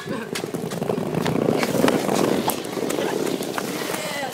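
Skateboard wheels rolling over brick paving under a person's weight: a steady rough rumble with scattered clicks as the wheels cross the paver joints.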